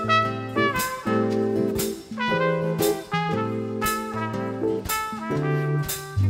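Live trumpet solo playing a jazz melody over a small band's accompaniment, with a sharp beat about once a second.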